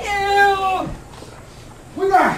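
A high-pitched voice holds one drawn-out, meow-like vowel for under a second, dipping in pitch at the end.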